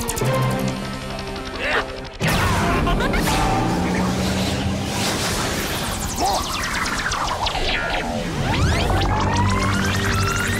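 Dramatic cartoon action music with sound effects: a sudden loud crash-like hit about two seconds in, then sci-fi effects sweeping up and down in pitch near the end.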